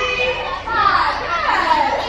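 Young cheerleaders shrieking and cheering as a teammate is tossed in a stunt: high excited yells that fall in pitch, starting under a second in and again a moment later, over a bed of chatter.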